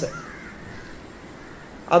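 A man's lecturing voice breaks off at the very start, then a pause with faint background sound and a faint short call soon after.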